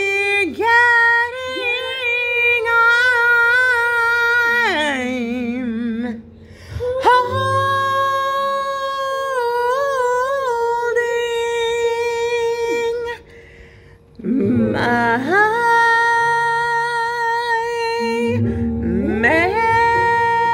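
A woman singing long held notes without words, each wavering with vibrato and some sliding up into pitch, with short breaks between them, over a quiet instrumental backing.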